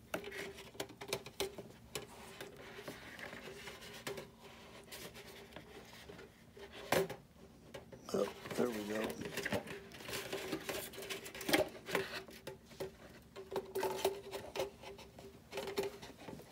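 Handling noises of a metal tailpipe being slid into a foam model jet's tail and fished through its plastic tailpipe ring: scattered clicks, taps and rubbing of plastic and foam, a few sharper clicks, over a faint steady hum.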